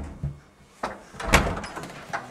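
A wooden door being handled and pushed open. There is a sharp click a little under a second in, then a louder knock a moment later.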